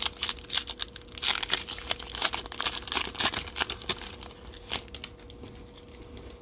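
Plastic-foil trading-card pack wrapper torn open and crinkled by hand: a dense run of crackling and ripping for about five seconds that thins out near the end.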